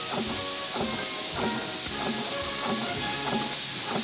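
A traditional Dutch march playing, with a steady high hiss laid over it as a foley sound effect for the factory machinery.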